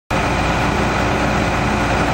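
Trailer-mounted hot-water pressure washer (5.5 gallons a minute, 3500 psi) running, a steady engine drone with a constant hum.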